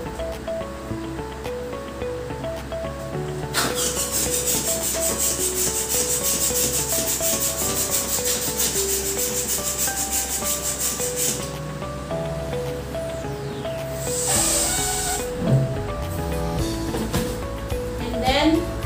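Handheld balloon pump worked in quick, even strokes, forcing air into a latex balloon, with a second shorter burst of pumping near the end, over background music.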